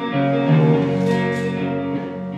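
Live band playing: sustained electric guitar and bass chords with drums, with two cymbal-like strokes about a second in.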